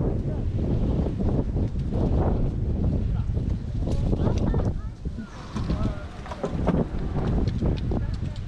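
Wind buffeting the microphone, a steady low rumble, with faint voices of people talking in the background in the second half.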